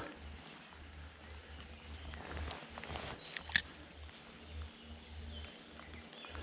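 Light rain hiss with wind rumbling on the microphone, and a single sharp click about three and a half seconds in.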